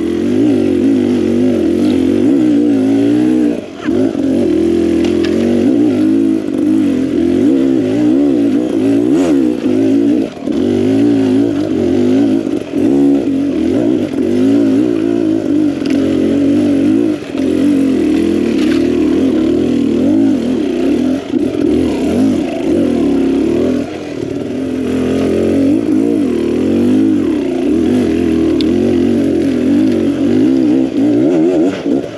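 Beta Xtrainer two-stroke dirt bike engine running under constant throttle changes, its pitch rising and falling as it revs through the trail, with brief let-offs a few times.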